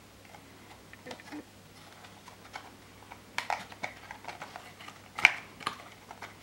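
Small cardboard box and plastic packaging being handled: scattered light clicks, taps and rustles, thicker about three and a half seconds in, with one sharp click a little after five seconds.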